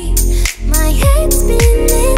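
Deep house music: held melody notes, a brief drop-out about half a second in, then a steady kick drum beat, about two beats a second, coming in about a second in.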